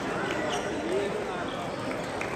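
Table tennis balls ticking off bats and tables in a large hall, a few sharp clicks from rallies in play, over background voices.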